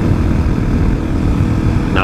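Kawasaki KLX250SF's single-cylinder four-stroke engine running steadily at cruising speed, with wind and road noise on the camera's microphone.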